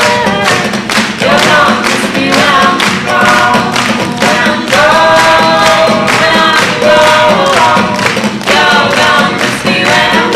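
Music: several voices singing together over a steady beat of sharp percussive hits.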